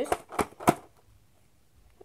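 Three quick sharp clicks as a boxed DVD collection is handled close to the microphone, the third the loudest, followed by quiet.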